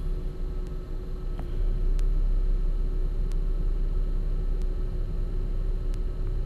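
Steady low background rumble with a constant hum, growing louder about a second and a half in, with a few faint ticks.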